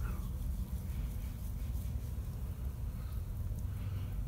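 Quiet room tone: a steady low hum with nothing else distinct.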